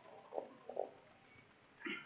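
Faint room sound with a few brief, muffled sounds from a congregation greeting one another at a distance: two short low sounds about half a second in and another near the end.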